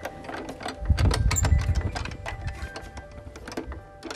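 Irregular metallic clicking and rattling of a key being worked in the lock of an old iron-studded wooden door.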